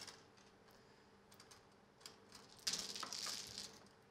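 Mahjong tiles clattering as they are pushed into the centre opening of an automatic mahjong table, a quick run of clicking about three seconds in, with a few light clicks before it.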